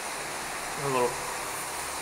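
A man says a couple of words over a steady hiss of background noise.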